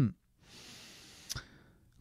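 A man's audible breath into a close microphone: a soft, airy hiss of about a second, with a short click near its end.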